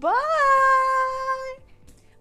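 A woman's drawn-out "byeee!", her voice sliding up in pitch and then held steady for about a second and a half before it stops.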